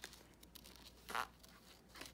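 Small scissors snipping through paper while cutting out an image: a short snip at the start, a louder cut about a second in, and a faint one near the end.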